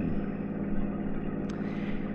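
Steady low drone of a car engine running, a radio-drama sound effect for a patrol car driving, with a faint click about one and a half seconds in.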